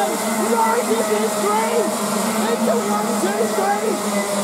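A pack of Rotax Max 125 karts' single-cylinder two-stroke engines buzzing together, many overlapping engine notes dipping and climbing again in pitch as the revs drop and pick up through a corner.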